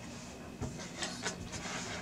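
Faint rustling of bundled power-supply cables being handled, with a few light clicks from their plastic plug connectors.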